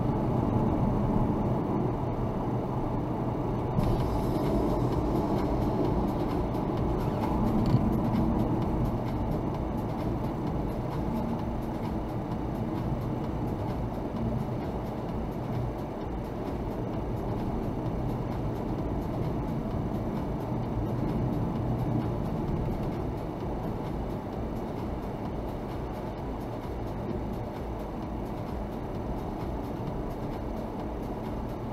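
Car driving on an open road, heard from inside the cabin: a steady low rumble of engine and tyre noise that eases a little as the car slows.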